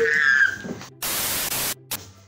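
A high-pitched child's cry trails off, then about a second in a loud burst of static hiss starts and stops abruptly after under a second, followed by a brief second blip of the same hiss.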